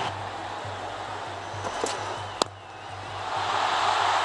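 Stadium crowd noise from a large cheering cricket crowd, with a single sharp crack about two and a half seconds in, after which the crowd noise dips briefly and then swells again.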